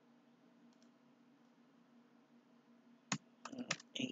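Computer keyboard typing: a quick run of four or five sharp keystrokes starting about three seconds in, after a stretch of faint steady low hum.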